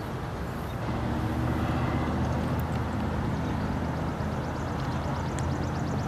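A motor vehicle's engine running steadily with a low hum, coming in about a second in and holding over the outdoor background.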